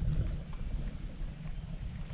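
Low, steady rumbling of wind buffeting the microphone as the camera moves along.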